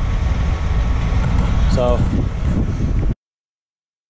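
Wind buffeting the microphone: a loud, low, rough rumble that cuts off abruptly to dead silence about three seconds in.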